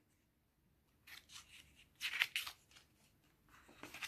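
Faint rustling of a glossy magazine page being turned by hand, in a few short swishes, the loudest about two seconds in.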